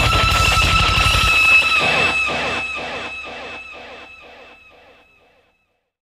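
Overdriven electric guitar lead through a HeadRush pedalboard set with drive, reverb and a long delay. The playing stops about a second and a half in, and a held high note and its evenly spaced delay repeats fade out over the next few seconds.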